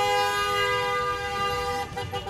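Car horn sounding one long, steady blast with two pitches together, cutting off shortly before the end.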